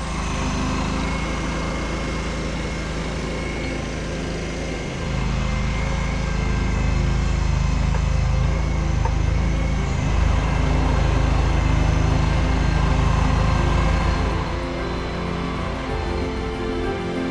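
Background music over the low rumble of a passing vehicle's engine, which grows louder about five seconds in and eases off near the end.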